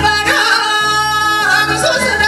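A woman singing a Korean folk song (minyo) into a microphone over an instrumental backing track, holding one long note for about a second with bends into and out of it.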